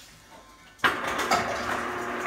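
A motor starts abruptly about a second in and keeps running with a steady hum under a rushing hiss.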